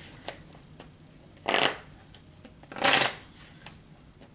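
A tarot deck being shuffled by hand: two short swishing bursts of cards about a second and a half apart, with a few light clicks of cards between them.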